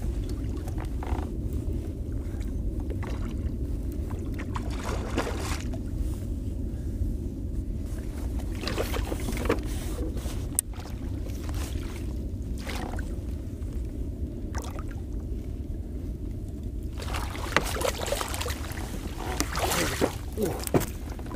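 Steady low rumble of water and wind around a fishing kayak, with scattered knocks and splashes. The noises grow busier in the last few seconds as a hooked trout is brought to the landing net.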